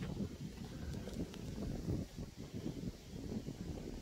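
Low, gusty rumble of wind buffeting the microphone.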